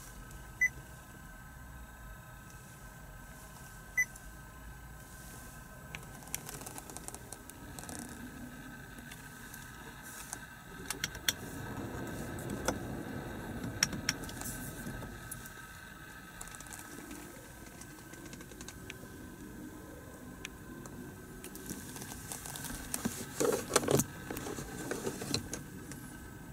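Honda Jade dashboard controls being operated: two short touchscreen beeps in the first few seconds, then scattered button clicks from the climate control panel. Near the end comes the loudest part, a cluster of plastic clicks and clatter as the fold-out cup holder is swung open beside keys.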